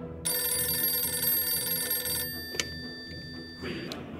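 Telephone bell ringing for about two seconds, then stopping, followed by a single sharp click.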